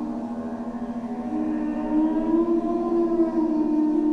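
Ambient drone music: low tones held steady throughout, with a higher siren-like tone that slowly rises and then falls in the middle.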